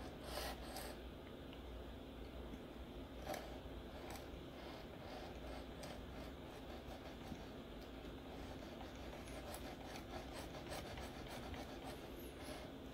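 Faint, steady scraping of a coarse Venev diamond stone stroked along a knife edge clamped in a Work Sharp Precision Adjust, with a light click about three seconds in.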